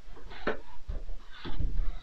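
Cardboard advent calendar window being picked open with the fingers: a couple of short scratches and rustles of card, about half a second and a second and a half in, with handling bumps.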